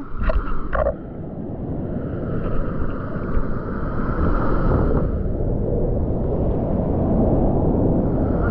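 Sea water sloshing and rushing around a camera held at the ocean surface as waves pass and break, heard as a steady, rumbling wash on the microphone. There are a couple of short splashes near the start.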